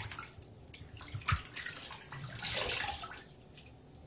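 Water splashing at a bathroom sink as a face is rinsed with cupped hands: a few irregular splashes and drips, the loudest about two and a half seconds in, then quieter.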